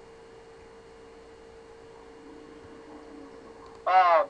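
Faint steady electrical hum, a single held tone, on the recording's audio line. A man's voice starts just before the end.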